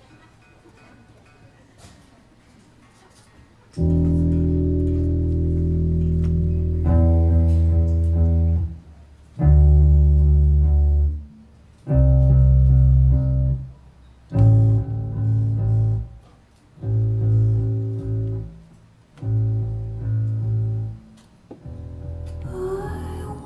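Live electric bass and electric guitar: after a few quiet seconds, the band starts a song with long held chords over deep bass notes. The chords come in phrases of about two seconds with short breaks between them.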